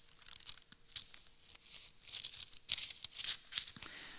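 Thin Bible pages being leafed through by hand: a run of crisp, irregular paper rustles and crinkles, busiest in the second half.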